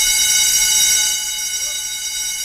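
Electronic news-graphic sting: a bright, sustained synthesized tone of many high pitches sounding together, starting suddenly and holding steady.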